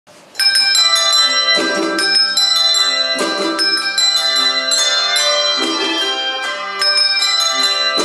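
A handbell choir playing a melody with harmony, many hand-rung bells struck in quick succession and left to ring on. Deeper bells join every second or two, and the playing begins about half a second in.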